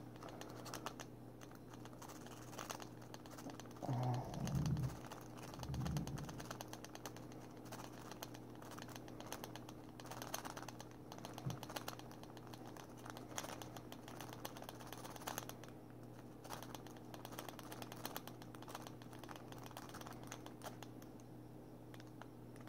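W-shaped rake pick being raked in and out of a steel padlock's keyway against a tension wrench: faint, rapid metallic clicking and scraping of the pins. A couple of louder low bumps come about four and six seconds in, over a steady low hum.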